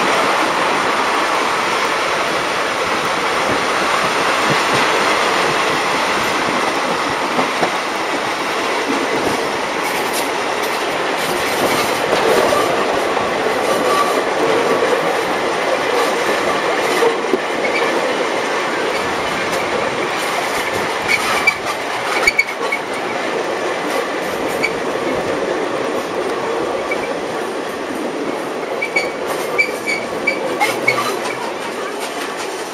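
Passenger coaches of a steam-hauled train running over the rails, heard from a coach window: a steady rumble and rush with the clack of wheels over rail joints, more frequent in the second half, and faint wheel squeal at times.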